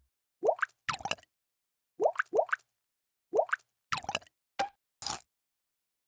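Cartoon 'plop' sound effects: about eight short, quick upward-sweeping bloops, mostly in pairs, with a noisier pop near the end.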